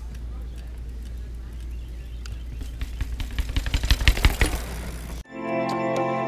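Outdoor camera-microphone sound with a steady low rumble and a quick run of clicks and knocks that grows louder, cut off about five seconds in by ambient guitar music.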